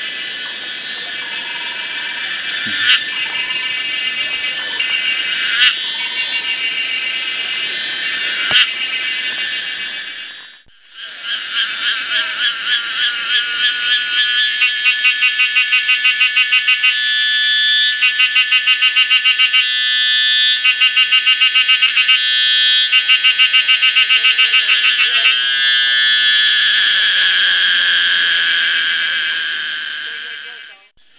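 Cicadas singing in a loud, dense, high-pitched buzz. After a brief dropout about ten seconds in, the song turns to a fast, even pulsing for most of the rest, then smooths back into a steady buzz near the end; a few sharp clicks come in the first part.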